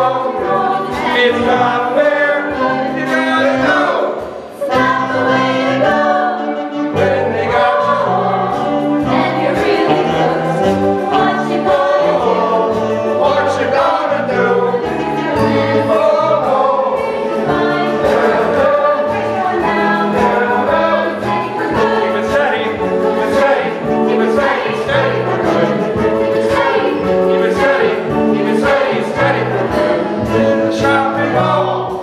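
Stage cast singing a musical-theatre ensemble number together over instrumental accompaniment with a steady beat, briefly dropping back about four seconds in.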